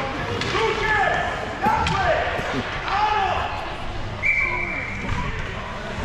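Ice hockey rink during a stoppage: players' and coaches' calls echo around the hall. There is a sharp knock of a stick or puck about two seconds in, and a short high whistle lasts about a second past the middle.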